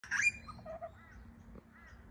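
Butcherbird calling: one loud, rich note right at the start, then a few soft, short arching notes.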